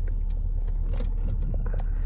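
Car engine idling at a stop, heard from inside the cabin as a steady low rumble, with a few faint clicks.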